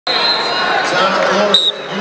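Arena crowd chatter and shouting, with a short, sharp referee's whistle about one and a half seconds in, starting the wrestling bout.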